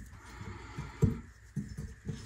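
Light knocks and clicks from parts being handled at the underside of a sink basket strainer. The sharpest knock comes about a second in, followed by a few smaller ones.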